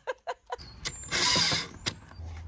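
Ryobi cordless drill driving a screw eye into a wooden fence board: a few clicks, then a half-second burst of mechanical noise about a second in, with a sharp click near the end.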